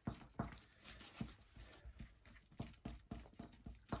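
Wooden craft stick stirring thick acrylic paint and pouring medium in a plastic cup. It makes faint, irregular knocks and clicks against the cup, about four a second.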